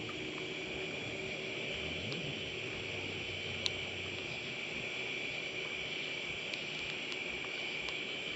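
Steady high-pitched insect chorus, with a single faint click a little past halfway.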